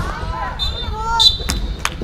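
A basketball bouncing on an outdoor hard court, with two sharp bounces in the second half, mixed with players' voices and a high steady tone.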